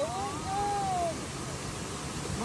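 A woman's long, high squeal, about a second long, rising then falling in pitch: a ticklish reaction to small fish nibbling her feet in the water.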